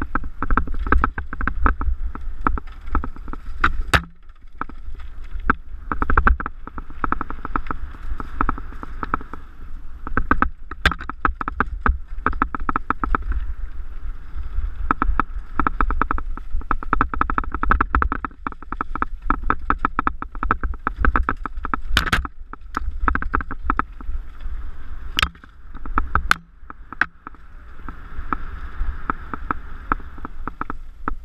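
Mountain bike descending a rocky dirt singletrack at speed: a continuous fast rattle and chatter from the bike and tyres over loose stones, over a low rumble, with a handful of sharp knocks from hard impacts.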